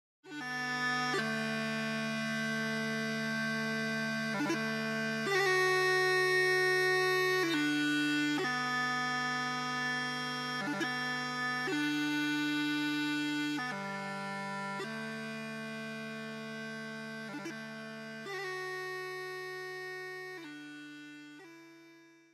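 Bagpipe tune: steady drones held under a chanter melody that moves between long held notes, fading out near the end.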